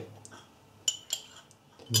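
Two light clicks of kitchenware knocking together, about a second in and a quarter second apart.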